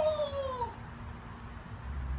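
A short, high-pitched cry that falls in pitch and fades out within the first second.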